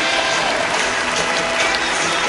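Audience applauding, a dense rapid clatter of clapping, with the ride's music playing beneath.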